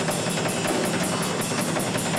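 Live rock band playing an instrumental passage: drum kit with a steady cymbal beat of about five strokes a second, over electric bass.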